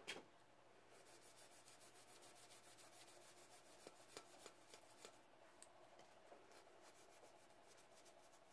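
Faint, quick back-and-forth rubbing of a solvent-soaked cloth rag on a painted stainless steel tumbler, several strokes a second, dissolving the paint off one spot to bare the glitter beneath. The strokes grow softer about halfway through.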